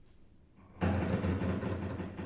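Low bowed strings of a viola, cello and double bass trio: a sudden loud, rough low note comes in just under a second in, heavy with bow noise, and fades near the end.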